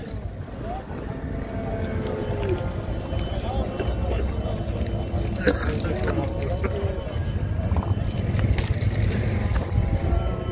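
Wind rumble on the microphone over the chatter of a busy livestock market, with faint drawn-out lowing from Friesian-cross calves, some calls falling in pitch.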